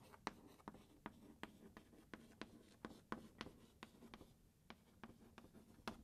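Chalk writing on a blackboard: faint, irregular taps and short scrapes as each letter stroke is made.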